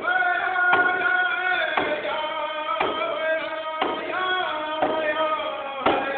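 Group of men singing a ceremonial drum song in vocables, without words, in long held notes that step down in pitch. A drum is struck steadily beneath them, about one beat a second.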